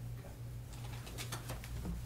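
Steady low hum of room noise with a few short clicks and rustles in the second half.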